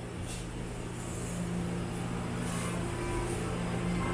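Faint rustle of a paper tissue rubbed over an aluminium beer can, over a steady low background hum.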